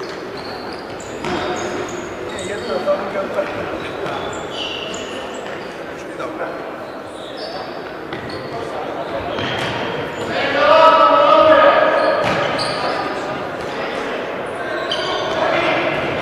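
Indoor futsal play in an echoing sports hall: shoes squeaking on the court floor and the ball being kicked, with players calling out. The loudest moment is a shout lasting about a second and a half, starting about ten seconds in.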